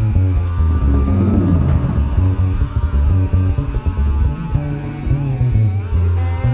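Live jazz-fusion improvisation: a deep bass line of held low notes under sustained, gliding guitar tones, with the band playing throughout.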